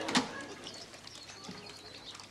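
Faint bird calls, with a brief louder sound just after the start.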